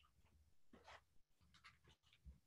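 Near silence: faint room tone over a computer call, with a few soft, brief noises about a second in and again near the end.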